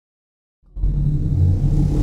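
Low, steady rumbling sound effect of an animated logo intro, starting suddenly about three-quarters of a second in.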